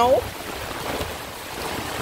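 Heavy hurricane rain pouring down as a steady wash of noise, with gusting wind rumbling on the microphone.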